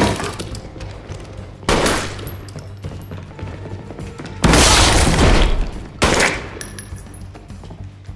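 Bursts of automatic gunfire in a film soundtrack: three loud bursts, the middle one the longest, over a steady music score.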